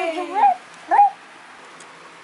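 A toddler's two short high-pitched squeals, about half a second apart, right after a drawn-out cheer of "yay" trails off.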